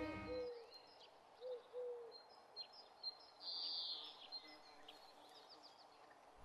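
Faint outdoor garden ambience with small birds chirping in short scattered calls. The tail of a bowed-string music cue fades out in the first half second.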